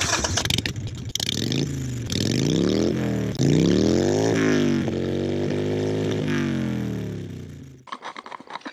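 A motorcycle engine comes in suddenly and revs up in several rising blips to a peak about four seconds in, then winds down slowly and fades out near the end.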